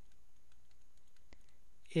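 A few faint clicks and taps of a stylus writing by hand on a tablet screen, over low room hiss.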